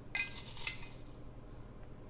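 Small metal spoon clinking and scraping against a glass measuring cup while scooping dry wheat bran. There is one sharp ringing clink just after the start and a lighter tick about half a second later.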